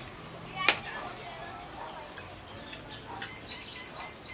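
A metal spoon clinks once sharply against a ceramic plate, ringing briefly, less than a second in, followed by quieter cutlery scrapes and soft voices.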